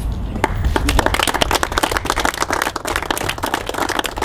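A small crowd applauding by hand: dense, irregular clapping that starts about half a second in.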